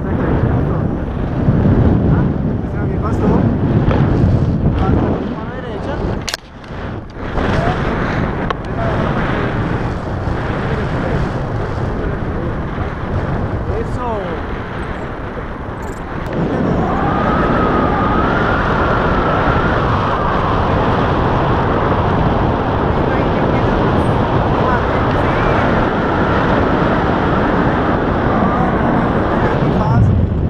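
Wind rushing and buffeting over the camera's microphone as a tandem paraglider flies, loud and gusty. A little past halfway it turns to a steadier, brighter rush with a faint wavering whistle.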